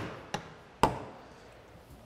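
Storage hatch and latch hardware on an aluminum boat being handled: a light click, then a sharp knock with a short ring, as a knock just before it fades out.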